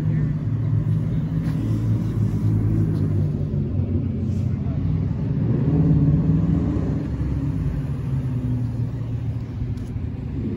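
Car engines rumbling at low speed as cars roll slowly into a parking lot, one engine growing louder as it passes close by a little past the middle, then easing off.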